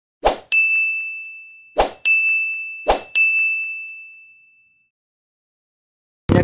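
Edited-in notification sound effects for an animated subscribe button: three times, a short hit is followed by a bright bell-like ding that rings out and fades, the last one dying away about five seconds in.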